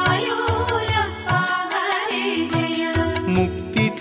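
Devotional Krishna song music with a steady percussion beat and a repeated bass line under a wavering melody line; the sung words pause here and resume right at the end.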